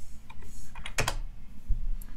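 A few keystrokes on a computer keyboard, typing a short number; the loudest key press comes about halfway through.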